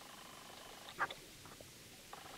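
A brief, soft splash of a leather boot stepping through shallow water about a second in, over a faint steady background.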